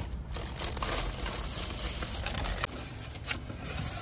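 Crinkling and rustling of takeout food packaging being handled, with scattered small clicks. A low rumble underneath stops about two-thirds of the way through.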